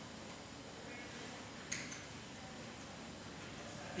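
Quiet room tone with a faint steady hiss, broken by one short, light click a little under two seconds in.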